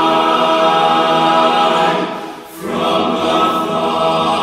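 Men's a cappella chorus in four-part TTBB harmony singing a sustained chord, which breaks off about two seconds in and, after a short pause, gives way to a new chord.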